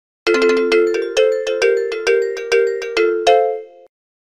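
A short electronic chime-like jingle: about fourteen quick, evenly paced bell-like notes, the last one held a little longer before the tune stops.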